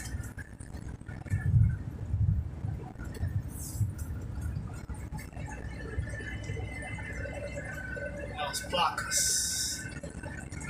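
Low engine and road rumble inside a moving vehicle cruising on a highway, a little heavier a couple of seconds in, with a short hiss near the end.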